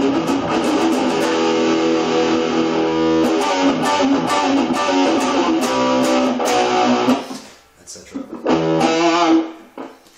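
Distorted high-gain electric guitar, an Explorer-shaped solid body played through a small Marshall Reverb 12 transistor combo amp. Dense, heavy riffing stops about seven seconds in. A short burst of notes with wavering pitch follows and fades out near the end.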